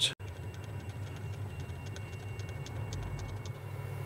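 Boxford lathe running in reverse to back the threading tool out after a screw-cutting pass: a low steady hum with light, regular ticking at about five a second, which stops shortly before the end.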